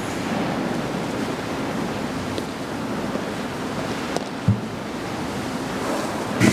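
Steady hiss of background room noise in a large church, with one short, soft low thump about four and a half seconds in.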